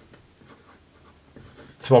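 Pen writing by hand on paper, a run of faint strokes.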